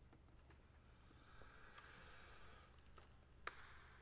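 Near silence: room tone with a faint soft hiss and light clicks of handling, then one sharper click about three and a half seconds in.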